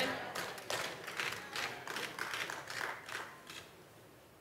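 Scattered clapping from a congregation in a large hall, a few claps at a time, dying away about three and a half seconds in.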